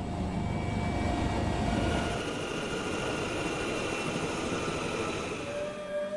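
Helicopter turbine engine running with a steady whine over a low rumble; the rumble eases off about two seconds in.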